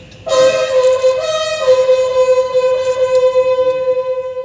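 Ceremonial bugle call holding one long, steady note. A second, slightly higher note overlaps it for the first second and a half.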